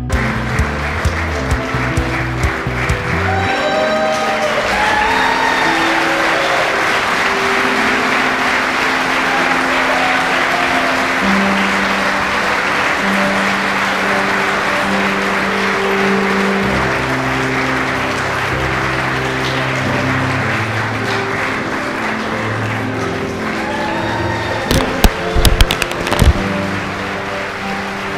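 A large audience applauding steadily, with background music of held notes playing under it. A few louder, sharp sounds stand out near the end.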